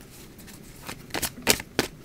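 Tarot cards being handled: quiet at first, then about five sharp card flicks and snaps starting about a second in as the deck is picked up to draw.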